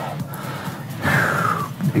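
A person breathing out into a stretch, a breathy rush of air, over quiet background music; about halfway through a single tone glides downward.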